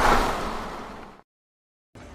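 Whoosh transition sound effect: a noisy swell that peaks at the start and fades away over about a second.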